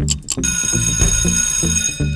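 An alarm-bell ring sound effect, starting about half a second in and held steadily for about a second and a half, signalling that the quiz timer has run out; a steady low music beat goes on underneath.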